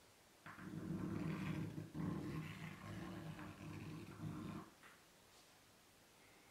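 Stick of chalk dragged across a blackboard in two long curving strokes. It skips and chatters against the board, so that it buzzes low and rough.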